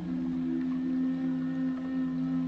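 Slow ambient background music: soft, low held tones that shift to a new pitch just after the start and are then sustained.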